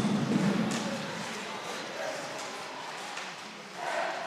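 Ice hockey arena sound during live play: a steady crowd hubbub with a few faint sharp clicks of sticks and puck on the ice. The crowd noise swells near the end.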